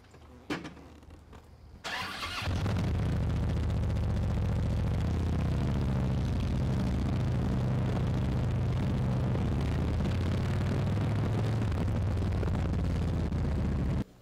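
A police motorcycle's engine is started about two seconds in, then runs steadily as the motorcycle rides off. A single click comes shortly before it starts.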